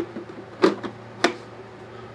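Plastic clicks and knocks as a filament cartridge is pressed onto the back of a Kokoni EC1 3D printer's plastic housing: three sharp clicks, a little over half a second apart.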